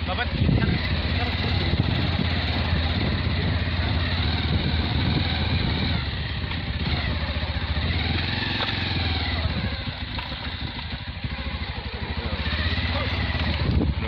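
Motorcycle engine running steadily while the bike is ridden, a low hum under a continuous rushing noise that eases slightly about ten seconds in.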